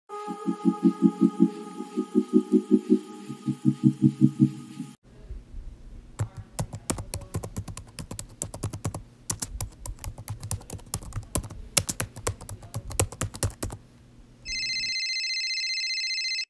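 A short musical phrase of quick repeated notes for about five seconds, then about ten seconds of rapid, irregular clicking of typing on a computer keyboard. Near the end a steady high electronic tone starts and runs for about two seconds.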